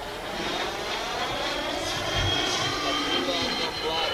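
Electric ducted fan of an E-flite Habu 32x model jet (80 mm nine-blade Jetfan) whining as the jet flies by. It grows steadily louder, and its pitch sweeps down toward the end as it passes.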